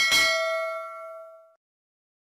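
A notification-bell 'ding' sound effect: a single bell strike that rings out and fades away over about a second and a half.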